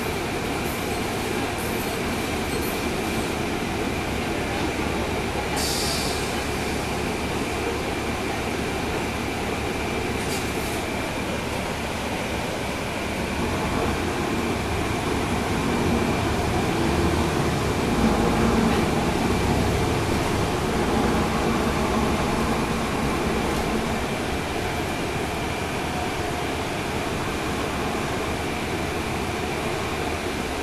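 Inside the rear of a 2012 NABI 40-SFW transit bus on the move: its Cummins ISL9 diesel engine and road noise run steadily with a constant high whine. The sound swells from about halfway through, loudest around two-thirds in, then settles back.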